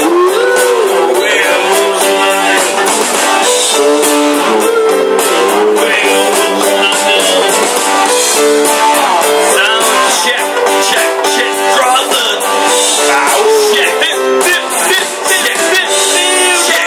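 Karaoke backing track with guitar playing loudly, with men's voices singing along over it through microphones.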